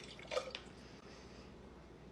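Breast milk poured from a small pump collection bottle into a glass mason jar: a faint trickle and drips, with a couple of light knocks about half a second in.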